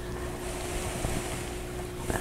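Steady low background hiss with a faint constant hum.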